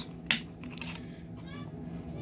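A single sharp plastic click as a DVD is pressed free of its case's centre hub, over a steady low background hum.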